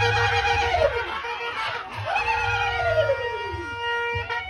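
Long wailing vocal calls through a PA system, twice, each swelling and then sliding down in pitch, over a steady held tone.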